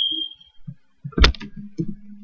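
Clicks and taps on a laptop keyboard or trackpad: one loud click about a second in, then a few lighter ones, after a short high ring that fades out at the start.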